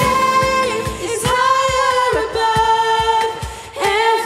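Live worship song: several women singing long held notes together in harmony, over keyboard and a steady low drum beat, with a brief break between phrases near the end.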